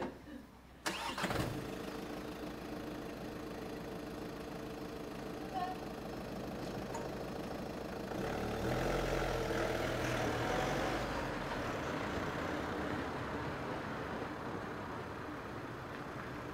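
A car's engine starts with a sudden catch about a second in and idles steadily. The car then pulls away, louder for a few seconds, and the sound eases off as it drives down the street.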